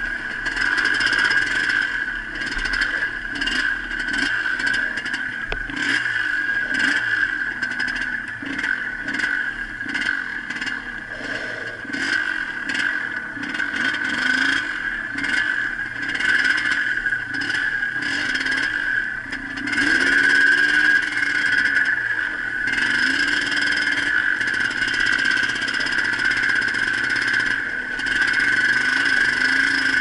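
Yamaha DT 180's two-stroke single-cylinder engine running under way off-road, its revs rising and falling, with a clear rev-up about twenty seconds in. Clattering from the bike jolting over rough ground runs through it.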